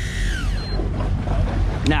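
Low, steady drone of a big sportfishing boat's diesel engines. Over it, a high whine from an electric deep-drop reel's motor falls in pitch and dies away in the first half second.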